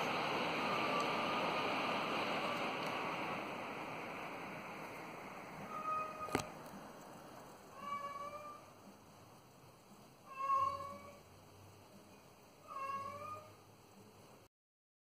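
Ceiling fan running at full speed on its new 2 µF run capacitor, a steady rush of air that fades away over the first half. Then a cat meows four times, a short call about every two to three seconds, with a single sharp click just after the first.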